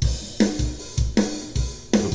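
A fast metal drum groove from the EZdrummer 2 Metal Machine pack at 157 BPM, playing kick and snare hits about every 0.4 s under a steady wash of cymbals.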